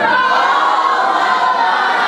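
A group of voices singing held notes together, several pitches at once with slow glides, like a small choir.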